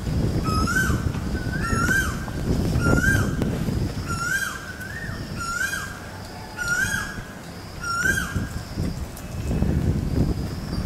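A bird calling over and over, a short call that rises and then drops, often in pairs, about once or twice a second. Underneath is a low rumble.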